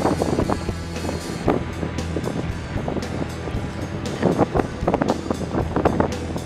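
Background music in a quieter passage: short plucked notes over a steady low tone, between louder rock sections.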